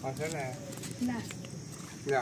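Short, indistinct vocal sounds, one near the start and another about a second in, with only faint background between.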